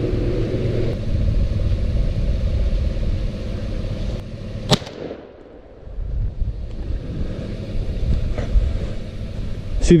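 A single shotgun shot about halfway through, over a steady low rumble of wind on the microphone.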